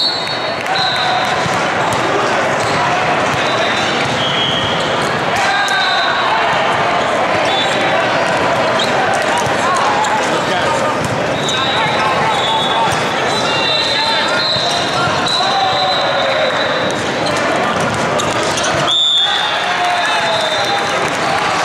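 Echoing hubbub of many voices in a large hall during indoor volleyball play, with scattered sharp ball hits and short high-pitched squeaks, typical of sneakers on a sport court.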